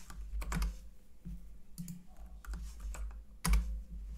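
Typing on a computer keyboard: irregular keystrokes, with one louder knock about three and a half seconds in.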